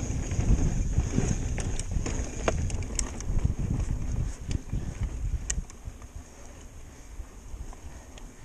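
Wind buffeting the microphone and mountain bike tyres rumbling over sandstone slickrock, with scattered sharp clicks and rattles from the bike. The rumble drops away sharply a little under six seconds in.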